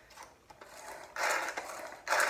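Tupperware Chop 'N Prep pull-cord chopper: after a couple of faint handling clicks, the cord is pulled once a little over a second in, giving a brief mechanical whirr as the blades spin in the bowl.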